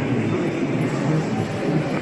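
Steady low rumble and murmur of a large, busy indoor hall, with no single sound standing out.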